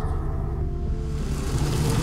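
A low, steady rumble with a few faint held tones above it.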